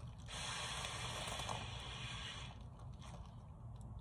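A long breath blown out into a thin plastic bag held over the mouth, with the bag crinkling. It lasts about two seconds, then fades to faint rustling.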